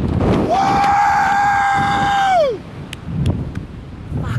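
A man's long, held yell of excitement, lasting about two seconds and ending in a falling pitch, over wind noise on the microphone. After it the wind is quieter, with a few faint clicks.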